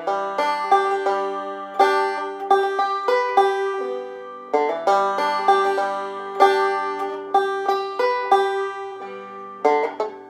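Five-string open-back banjo finger-picked, with one high drone note ringing through the roll. A short passage of about four seconds is played over and over, practice looping of a hard up-the-neck transition.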